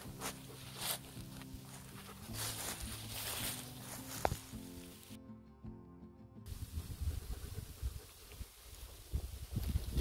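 Soft background music for the first half, stopping about five seconds in. Then outdoor sound takes over: wind rumbling on the microphone, with rustling and footsteps in dry grass and fallen leaves.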